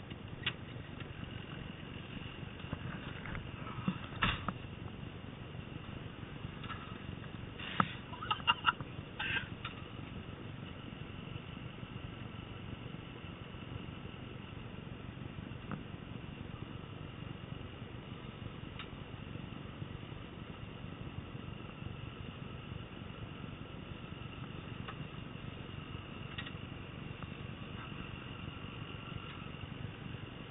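Wildland fire engine running as it rolls with its pump working, a steady low drone with a thin steady whine above it. A few sharp knocks and rattles come about four seconds in and again around eight to nine seconds in.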